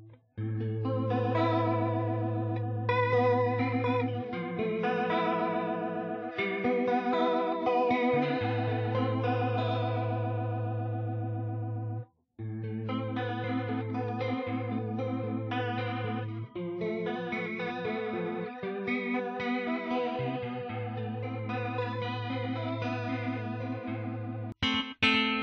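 ESP Mirage electric guitar played through a Digidesign Eleven Rack's C1 Vibrato Stereo preset: ringing chords over a held low note, the pitch wavering with the vibrato. The sound cuts out briefly about halfway, then the playing resumes.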